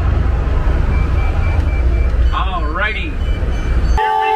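An amphibious duck boat's engine rumbling low and steady with rushing water as the vehicle enters the river, with passengers' excited calls a little past halfway through.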